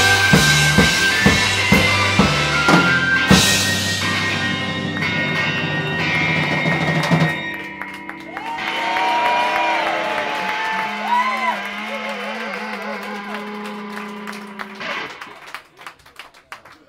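Live rock band with drum kit and electric guitars playing loud. About seven seconds in the drums stop and held guitar and bass notes ring on with wavering, gliding tones, and a last hit near the end closes the song.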